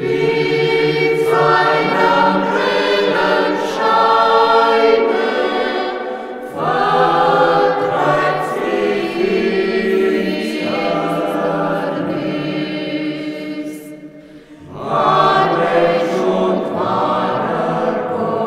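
Mixed church choir of men and women singing, in three phrases with brief pauses about six and a half and fourteen and a half seconds in.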